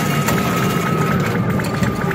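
Star Trek coin pusher machine with arcade din behind it: a steady hum and a held electronic tone that stops about a second in, giving way to a quick run of even ticks.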